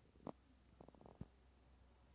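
Near silence: a low steady hum with a few faint short clicks, one early and a small cluster about a second in.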